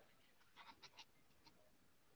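Near silence on the call's audio, with only a few very faint short sounds.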